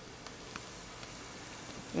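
Ground-turkey patties sizzling in a hot pan: a steady hiss with a few faint pops.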